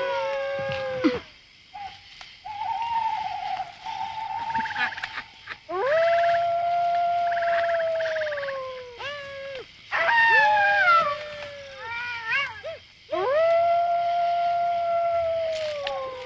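Jackals howling: a run of long, drawn-out howls of two to four seconds each that sag in pitch at the end, sometimes overlapping, with a few short rising yelps about twelve seconds in.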